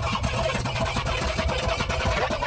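Car cabin noise: a steady low rumble with jumbled, indistinct sound over it.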